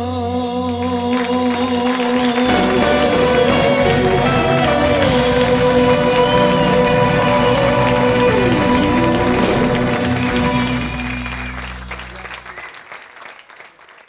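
Live Greek laïko band with bouzoukis, guitar, drums and clarinet playing the closing bars of a song, ending on a long held chord with a wash of cymbals and applause. The sound fades out over the last few seconds.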